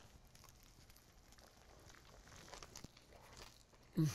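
Faint sounds of a man chewing a mouthful of burger, with a few soft mouth clicks about two and a half to three and a half seconds in; otherwise near silence.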